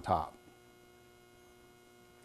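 A faint, steady electrical hum, several steady tones at once, heard through a pause after a man's single spoken word.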